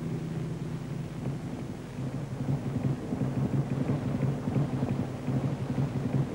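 A steady low hum under a rumbling, crackly noise.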